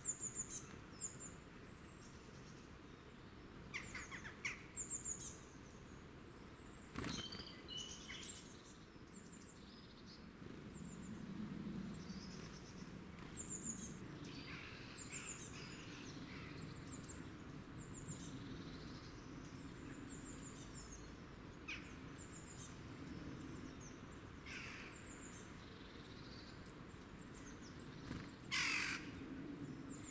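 Woodland birds calling and chirping, with short, high, thin calls repeating throughout and a louder, noisier call near the end.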